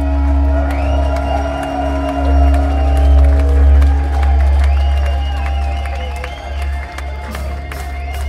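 A rock band's electric guitars and bass hold a sustained, ringing chord over a steady low drone, with the crowd cheering and whistling over it.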